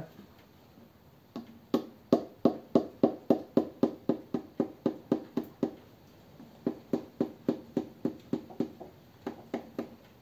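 A soft-faced Thor hammer tapping a connecting-rod cap on a flathead engine's crankshaft to knock it loose. It gives two runs of quick, evenly spaced taps, about three a second, each with a short metallic ring, and then a few more near the end.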